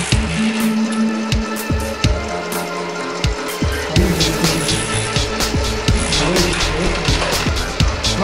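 Linotype line-casting machine running, a steady hum with irregular sharp metallic clicks of brass matrices and mechanism as a line is assembled.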